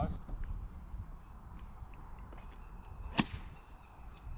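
A single sharp click about three seconds in, a golf club striking the ball, over faint outdoor background noise.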